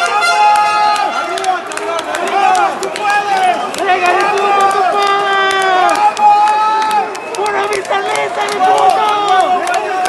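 Crowd of spectators shouting and yelling over one another, with frequent sharp claps or smacks through the shouting.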